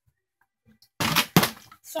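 Plastic water bottle being flipped and landing on a hard floor: a sudden clatter about a second in, then a sharp knock.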